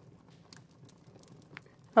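Near silence: faint room tone with a couple of soft, faint clicks.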